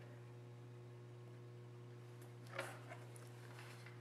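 Near silence: a steady low electrical hum of the room, with a faint brief rustle about two and a half seconds in as the hardboard painting board is handled and lifted to tilt it.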